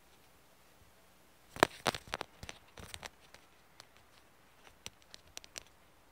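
Handling noise of a pair of wireless earbuds: a quick run of clicks and taps about one and a half seconds in, then a few separate clicks over the last two seconds.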